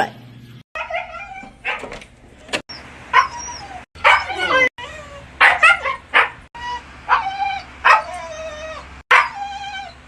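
A Siberian husky making its 'talking' vocalizations: a string of short howl-like calls that slide up and down in pitch, broken by several abrupt cuts.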